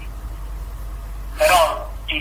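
A pause in conversation with a low steady hum, then, about one and a half seconds in, a short loud vocal sound from a person, a brief pitched syllable without words.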